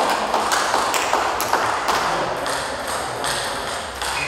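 Table tennis rally: the ball clicking sharply off the bats and the table, about three hits a second, in a large hall.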